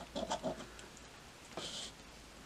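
A coin scraping the coating off a scratch-off lottery ticket: a few quick faint scrapes, then a longer scrape about one and a half seconds in.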